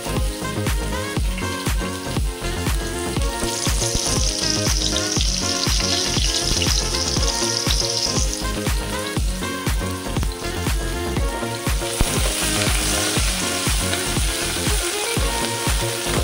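Chopped onions sizzling in hot oil in a pot, the sizzle strongest from about three to eight seconds in and again from about twelve seconds in, over background music with a steady beat.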